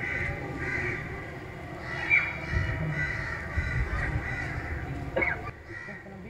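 Birds calling repeatedly over a low steady rumble.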